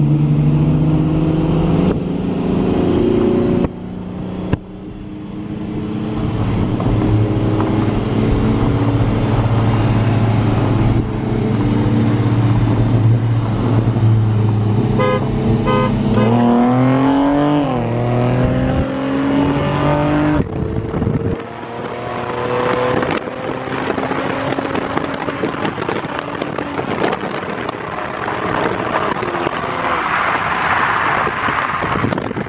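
Two cars' engines run side by side at a steady cruise. About halfway through, a car horn gives two short honks as the start signal of a rolling drag race. The engines then rev up hard under full acceleration, the pitch climbing, dropping at a gear change, and giving way to loud wind and road rush through the open window.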